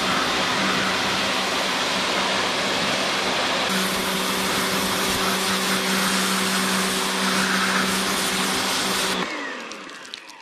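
Pressure washer running, its motor humming steadily under the hiss of the water jet hitting moss-covered roof tiles; the spray grows louder and brighter a few seconds in. About nine seconds in the spray cuts off suddenly and the motor's hum falls away as it winds down.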